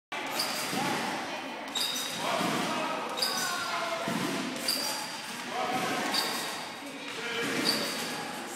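Trampoline bed and springs taking the gymnast's landings, six bounces about a second and a half apart, each a sharp thump with a brief metallic ring, in a reverberant hall.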